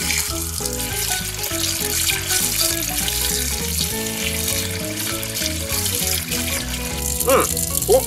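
Tap water running into a stainless steel sink, splashing over a gutted sea bream as it is rinsed by hand, under background music.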